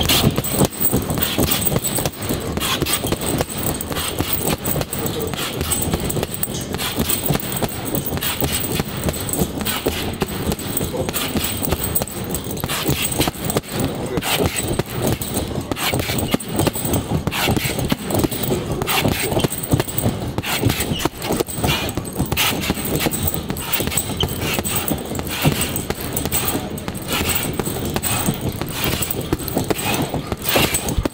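Boxing gloves hitting a hanging heavy punching bag in a long, fast, non-stop series of punches, several a second, starting abruptly.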